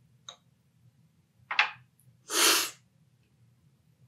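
A brief sucking hiss, then a louder, longer slurp of about half a second: coffee being sucked noisily off a cupping spoon. This is the forceful cupping slurp that sprays the coffee across the palate to taste it.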